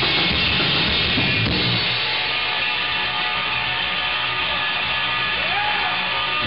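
Live punk rock band playing: distorted electric guitars, bass guitar and drum kit, loud and dense. About two seconds in, the heavy bass and drums drop back, leaving mostly guitar.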